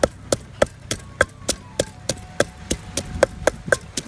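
Wooden pestle pounding red chilies in an earthenware Thai mortar (krok) for som tam: a steady run of sharp knocks, about three a second.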